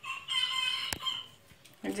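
A rooster crowing once, for about a second, with a short sharp click near its end.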